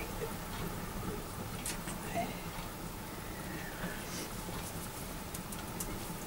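Water heating toward the boil: a steady low hiss with a few light ticks.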